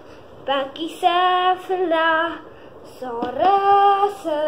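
A child's voice singing wordless, high held notes, with a short pause in the middle and an upward slide into a long note near the end.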